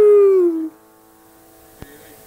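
A dog howling: one long held note that slides down in pitch and stops less than a second in.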